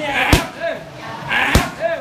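Boxing gloves striking a trainer's pad mitts: two hard punches landing about a second and a quarter apart, each a sharp smack, with a voice calling between and around them.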